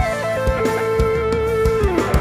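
Live rock band with an electric guitar lead holding one long note that slides down in pitch near the end, over a steady kick-drum beat.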